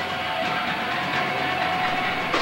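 Distorted electric guitar of a live hardcore band held ringing through the amplifier, a steady sustained tone with a noisy wash and no drum strokes.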